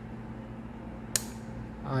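A single sharp click about a second in, from a key being pressed on an HP 49g+ graphing calculator's keypad, over a steady low hum.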